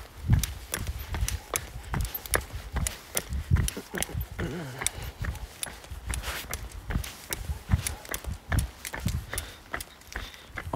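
Footsteps and phone-handling noise: irregular sharp clicks and soft low thumps, as of someone walking with a phone held close to the microphone.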